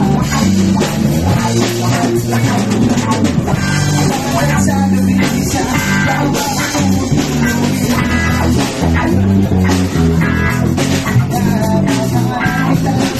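Live rock band playing: electric guitar over a moving bass line and drums, loud and unbroken.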